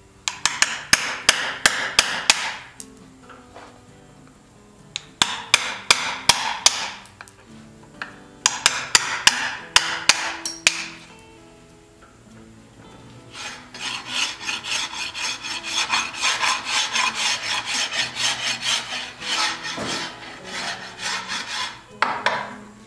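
A flat hand tool, seemingly a file, rasps against the steel tire of a buggy wheel in quick strokes. There are three short bursts, then a longer, denser run from about halfway until near the end.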